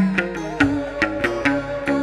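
Instrumental passage of chầu văn ritual music between sung verses. A plucked-string melody, in this genre typically the moon lute (đàn nguyệt), plays over quick, sharp percussion strikes of wooden clapper and drum.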